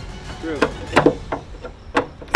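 A hammer striking the wooden wall framing, with about four sharp knocks in the second half.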